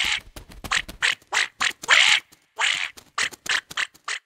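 A cartoon duckling quacking in a rapid, uneven string of about a dozen short quacks, with brief silences between them.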